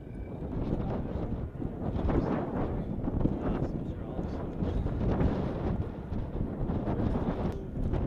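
Wind buffeting the microphone, with indistinct talk from a group of people.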